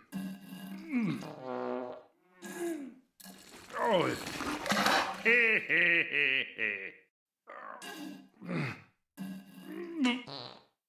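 A cartoon character's voice making a run of short wordless grunts and groans, each falling in pitch. A longer, louder strained sound with a rippling quality comes about five seconds in.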